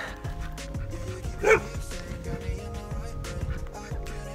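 A dog gives a single short, sharp bark about a third of the way in, over background music with long held tones.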